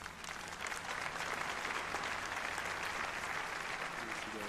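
Audience applauding: the clapping builds up over the first second, then holds steady.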